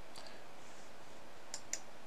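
A few faint computer mouse clicks, clustered about one and a half seconds in, over a steady low hiss.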